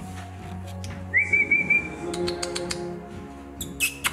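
A person's short whistle, one steady high note held for about a second, over background music, followed by a few sharp clicks.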